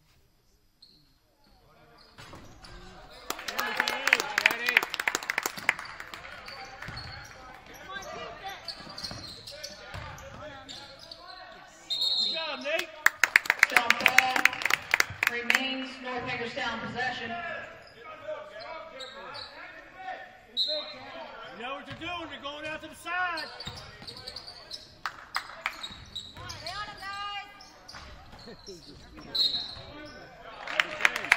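Basketball game in a gym: the ball bouncing on the hardwood court amid players' and spectators' voices, echoing in the large hall. It is near silent for the first two seconds before the play and voices start.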